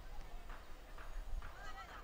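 Footballers shouting to each other on the pitch, with one sharp call near the end, over a couple of short thuds of the ball being kicked.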